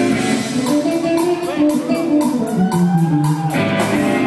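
Live rock trio playing: an electric guitar lead with bending, sliding notes over bass guitar and a drum kit with cymbal hits.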